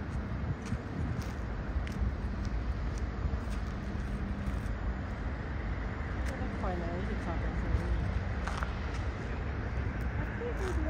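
Steady low rumble of distant jet airliners' engines taxiing and waiting at the airport. Faint voices come in from about six and a half seconds in.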